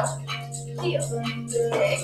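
Tap shoes striking a wooden studio floor about once a second, slow toe and heel taps, over background music with a steady low bass note.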